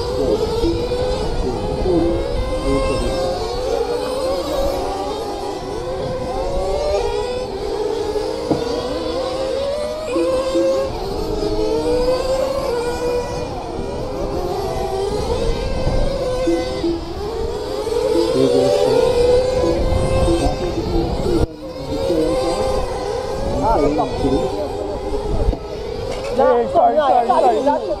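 Several radio-controlled race cars running laps together, their motors rising and falling in pitch over and over as they accelerate and brake, the overlapping whines growing stronger near the end.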